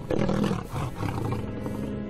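A male lion roaring, a rough, low call loudest in the first second and a half, over background music.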